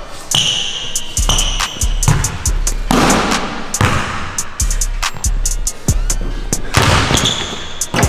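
A basketball bounced repeatedly on a hardwood court while a player dribbles, under background music with a steady beat.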